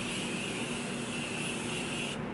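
Morphe Continuous Setting Mist spray bottle giving one long, steady hiss of fine mist onto the face, lasting about two seconds.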